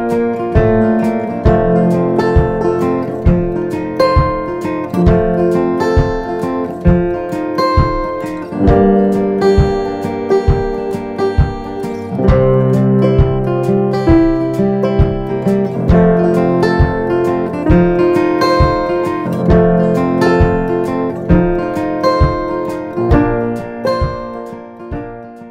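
Background music led by a strummed acoustic guitar, with chords struck in a steady rhythm over sustained notes.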